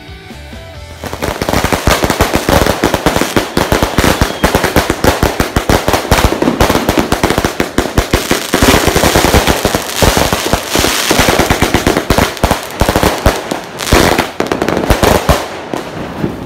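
Background music for about the first second, then fireworks going off close by: a loud, dense, rapid string of bangs and crackles.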